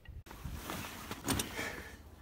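Scuffing and rustling close to the microphone, with a few sharp knocks in the middle, as a climber scrambles over rock.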